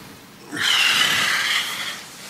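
A person's long breathy exhale, like a sigh, starting about half a second in and lasting about a second and a half.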